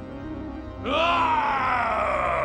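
A man's drawn-out angry groan, rising in pitch and then slowly falling, starting about a second in, over dramatic background music.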